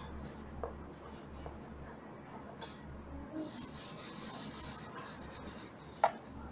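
Faint chalk writing on a blackboard with a few light taps, then a hand rubbing chalk off the board in a run of quick scratchy strokes for nearly two seconds, past the middle.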